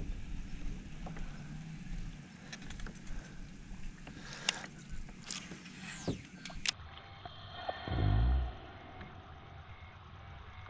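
Wind and lapping water around a fishing kayak, with scattered sharp clicks and knocks through the middle. A short, loud, low thump comes about eight seconds in.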